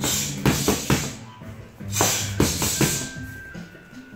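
Boxing gloves smacking focus mitts: two quick combinations of about four punches each, one near the start and one about two seconds in. Background music with a bass line plays throughout.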